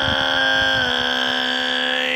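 A man's voice holding one long, loud sung note at a steady pitch, belted in a nu metal style.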